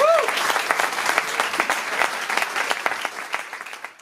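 Audience applauding at the end of a live guitar piece, with a short shout from a listener at the start. The clapping fades away near the end.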